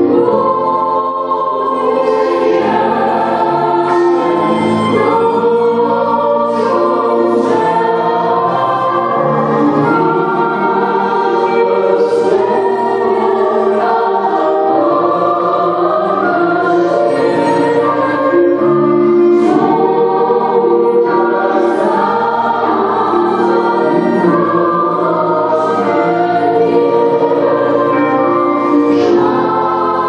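A choir and a small group of male and female singers sing a Polish Christmas carol together, holding sustained notes continuously.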